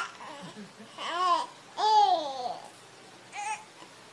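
Four-month-old baby's happy vocalizing: a few short high-pitched squeals, each rising and falling in pitch, with short pauses between them.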